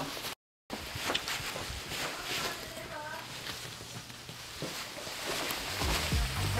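Faint, distant voices over low background noise, with a brief complete dropout to silence just after the start.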